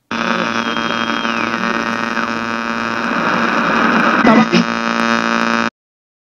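A loud, steady electric buzzing hum with a noisy jumble and faint voice-like sounds layered over it, cutting off suddenly near the end.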